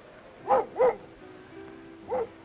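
A dog barking twice in quick succession, about half a second in, with soft background music coming in just after.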